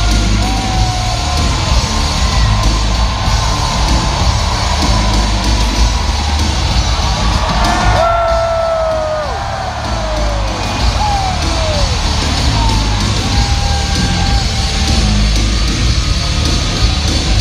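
Heavy rock entrance music over the arena PA with a crowd cheering and yelling, recorded from the stands. Several drawn-out yells from nearby fans stand out, sliding down in pitch, most of them around the middle.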